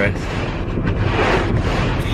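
Car's heater fan blowing hard on windshield defrost, a steady rush of air with a low hum beneath it, clearing a frozen-over windshield.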